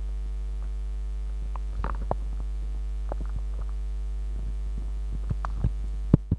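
Steady electrical mains hum from the hall's sound system with a low buzz and overtones, broken by scattered clicks and knocks as wired microphones and their cables are handled.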